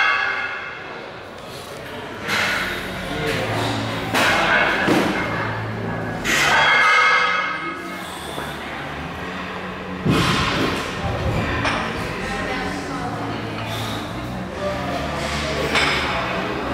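Heavy dumbbells knocking and thudding as they are lifted off a rack and set on the knees, a few thuds with the loudest about ten seconds in, over background music.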